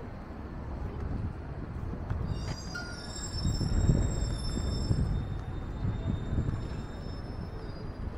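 City street traffic rumbling, with a high steady squeal of vehicle brakes from about two and a half to six seconds in, as the rumble swells.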